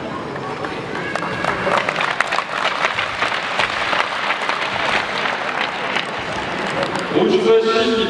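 Applause from a small group, hand claps rising about a second and a half in and dying away near the end, when a man's voice starts.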